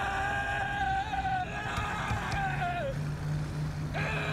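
A man screaming inside a moving car: long held yells, the second sliding down in pitch about three seconds in, over the steady drone of the car's engine. A fresh scream starts near the end.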